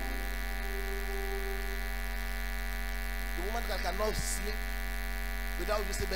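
Steady electrical mains hum, a low buzz with many overtones, from the sound system. Faint voices mutter briefly about halfway through and again near the end.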